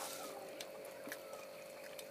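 Quiet background with a faint steady hum and a few light clicks from hands handling crisp hollow puri shells and their filling.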